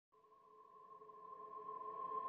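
Ambient background music fading in from silence: a sustained chord of steady held tones growing slowly louder.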